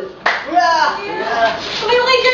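Several voices calling out greetings in Tagalog, one after another.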